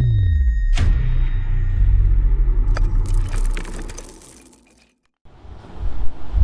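Cinematic logo-intro sound design: a deep falling sweep and a low rumble, with a sharp hit in the first second, fading out about five seconds in.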